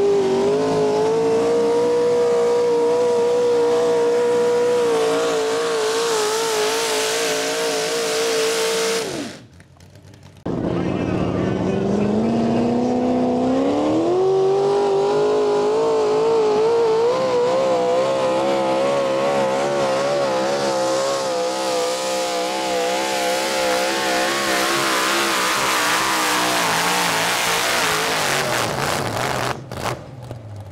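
Naturally aspirated mini rod pulling tractors running at full throttle down the track. The first engine's pitch climbs and then holds high, wavering under load. After a brief break about nine seconds in, a second mini rod's engine climbs from low to high and holds, wavering, until it drops off near the end.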